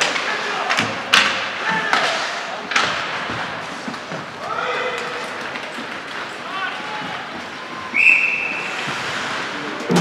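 Ice hockey play in an arena: sharp knocks of the puck and sticks against the boards in the first few seconds, with players' and spectators' shouts echoing in the hall. A short high tone sounds about eight seconds in.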